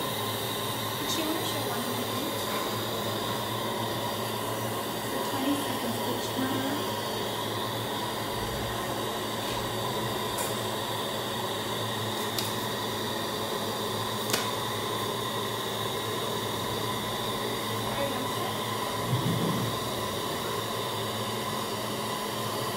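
Dental high-volume suction tip running steadily with an even rushing hiss and a faint hum, with faint voices in the background.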